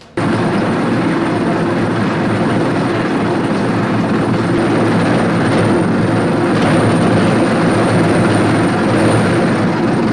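Cat compact track loader running hard, driving its hydraulic wheel saw attachment as it cuts through pavement: a loud, steady grinding drone with a thin high whine over it. It starts suddenly just after the beginning.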